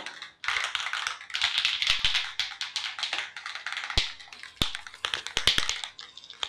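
Aerosol spray paint can being shaken, its mixing ball rattling inside in rapid, irregular clicks with a few brief pauses.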